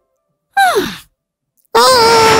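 A cartoon character's short sigh-like vocal, about half a second long, its pitch sliding steeply down, between stretches of silence. Near the end a louder sustained voice or music cuts in abruptly.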